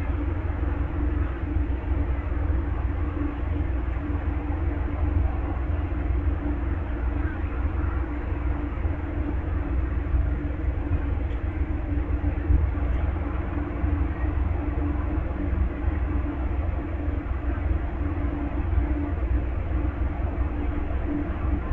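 Amtrak Southwest Chief standing at the platform, its diesel locomotives idling with a steady low rumble and drone.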